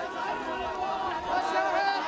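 A large crowd of mourners, many voices talking and calling out at once.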